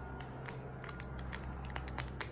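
Small plastic spoon pressing and clicking against glitter beads in a little plastic cup as the beads are crushed. The clicks are light and irregular and come more often in the second half. The beads are not breaking up.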